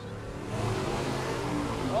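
Two drag cars, a Holden Torana among them, launching off the start line at full throttle with wheel spin. The engine sound swells loudly about half a second in, with tyre noise over it.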